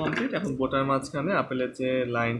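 A voice speaking in a steady run of short syllables.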